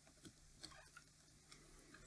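Near silence, with a few faint, scattered clicks of a small screwdriver prying at the metal magnet yoke on a DVD drive's laser pickup.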